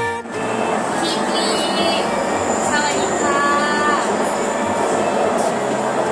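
Steady running noise of a metro train car heard from inside the carriage, with short snatches of voices and a faint high whine.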